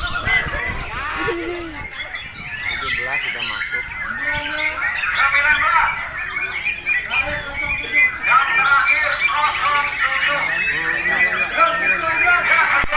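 Many caged white-rumped shamas (murai batu) singing at once, with dense overlapping rapid chirping phrases, growing louder in the second half.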